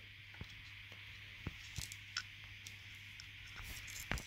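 Quiet room tone with a steady low hum and hiss, broken by a few faint small clicks.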